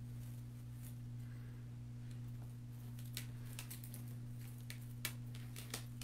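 A few light clicks and rustles from artificial pip-berry stems being handled and pushed into a grapevine wreath, over a steady low hum.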